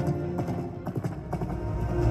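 Soundtrack music of a projection-mapping show, with galloping hoofbeat sound effects in the first part. The music dips mid-way, then swells with deep bass near the end.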